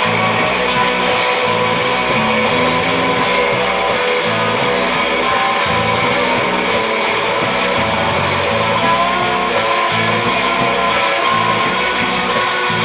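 Live rock band playing an instrumental passage: an amplified hollow-body electric guitar over drums, with cymbal strokes repeating through it.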